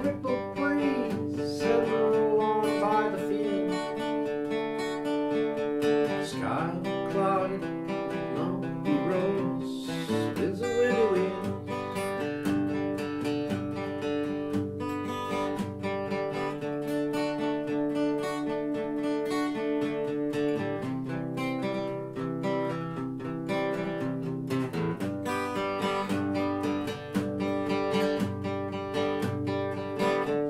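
Acoustic guitar strummed in steady rhythm, playing chords through an instrumental passage between sung verses.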